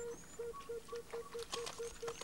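A bird calling one low note over and over, about four times a second, evenly and without a break. Faint high thin whistles sound near the start, and a run of sharp clicks comes in the second half.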